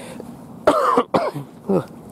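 A man coughs twice in quick succession about two-thirds of a second in, a sharp first cough followed by a shorter second one; he has a lingering cough and a croaky voice.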